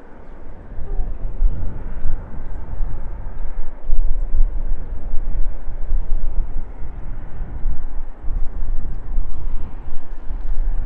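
Distant steam locomotives working a train, heard as a low rumble that swells and fades unevenly, mixed with wind noise on the microphone.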